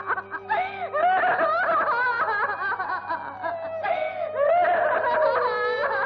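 A woman sobbing and wailing aloud in short, wavering cries that break and catch, with one longer drawn-out cry near the end.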